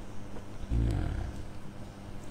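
A man's brief low-pitched vocal sound, a short hum-like burst, about three-quarters of a second in, during a pause in his speech.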